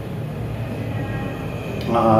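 A steady low rumble of background noise, with no distinct drinking or swallowing sounds standing out.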